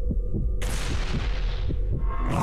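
Cinematic promo sound design: a low throbbing rumble with regular low thumps, and a sudden hissing whoosh hit about half a second in that fades away over the next second.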